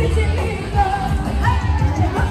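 Loud live music: a singer over a band with a heavy bass line.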